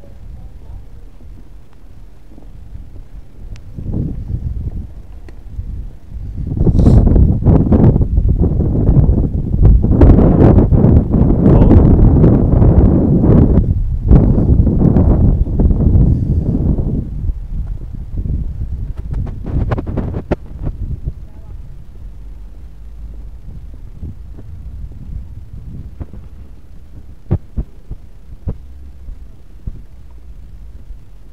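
Wind buffeting the camera microphone: a loud, low rumble that swells about six seconds in and dies away after about ten seconds, with fainter rumbling before and after.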